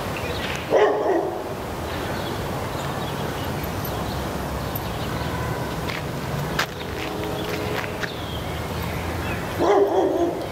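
A dog barking twice, about a second in and again at the end, over a steady low rumble.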